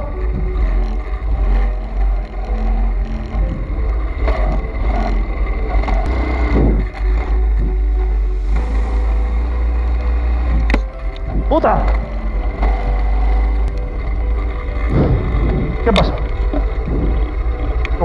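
125cc pit bike engine running and revving as the bike is ridden through tight turns, with heavy wind buffeting on the camera microphone.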